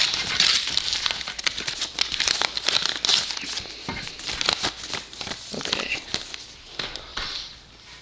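A padded envelope and its paper note being handled and opened close to the microphone: rustling and crinkling paper with many small clicks, dying down near the end.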